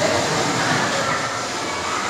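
Steady rolling rumble of electric bumper cars running over a steel-plated floor, with a faint thin whine about halfway through.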